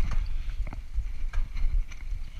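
Mountain bike rolling down a bumpy dirt singletrack, with irregular clicks and knocks as the bike rattles over the rough ground and a steady low rumble of wind on the microphone.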